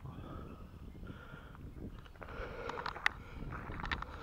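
Wind rumbling on a handheld camera's microphone, with a few sharp handling clicks and rustles in the second half as the camera is turned around.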